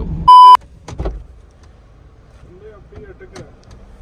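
A short, very loud electronic beep at one steady pitch, like a censor bleep, lasting about a quarter of a second, a third of a second in. After it come faint clicks and knocks inside a car as its passenger door is opened.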